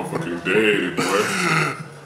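A man laughing without words: two drawn-out voiced laughing sounds.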